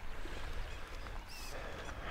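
Steady outdoor ambience beside a creek: an even hiss over a low rumble, with a faint short chirp a little after the middle.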